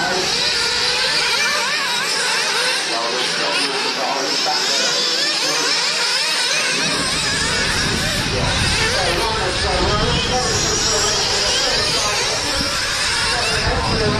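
Several nitro-engined RC off-road cars racing, their small high-revving engines whining up and down in pitch as they accelerate and brake around the track. A low rumble joins about seven seconds in.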